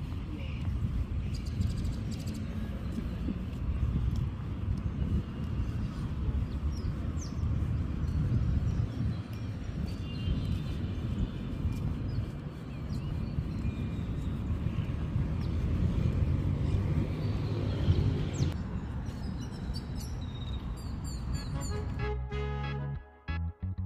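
Wind buffeting a phone microphone outdoors, heard as a low, uneven rumble, with a few faint high chirps now and then.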